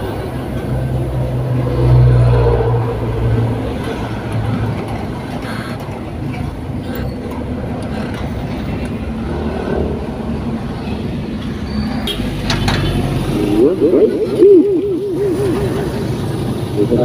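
Car engine and road noise heard from inside a moving car in city traffic, a steady low hum that swells about two seconds in. A wavering voice comes in near the end.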